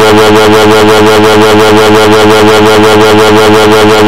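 An extremely loud, distorted electronic buzzing drone, a cartoon sound effect, with several steady tones at once and a fast even flutter of about six or seven pulses a second.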